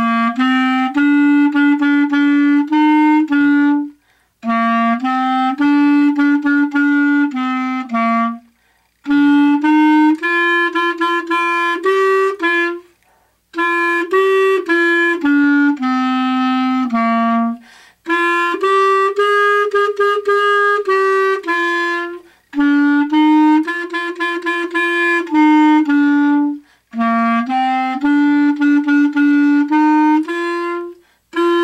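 Solo B-flat clarinet playing a simple, brisk melody in its low range, note by note in phrases of about four seconds, with short breaks for breath between phrases.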